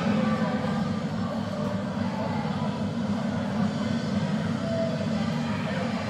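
A steady low drone, with faint voices in the background.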